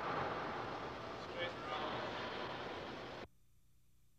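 Steady background noise of a large hall with indistinct voices in it, cutting off abruptly a little over three seconds in.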